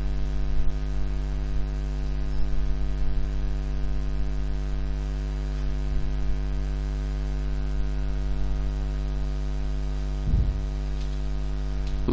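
Steady electrical mains hum with a buzzy stack of overtones, picked up on the recording line.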